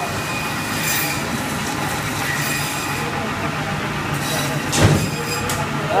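Steel trolleys of an overhead meat rail rolling and squealing as hanging carcasses are pushed along, over a steady machinery hum. There is one loud metal clank about five seconds in.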